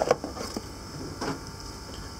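A sharp click just after the start, then a few faint knocks of tools being handled, over the steady hum of a running board preheater on the rework bench.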